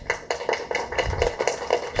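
Light handclaps, a quick, uneven run of about four or five sharp claps a second.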